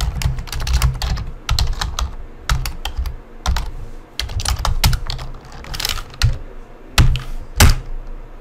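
Typing on a computer keyboard: an irregular run of key clicks as a command is typed, with two louder keystrokes near the end.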